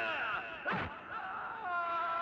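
A man's drawn-out cry of pain, its pitch bending, with a sharp falling swish-like hit sound about three-quarters of a second in.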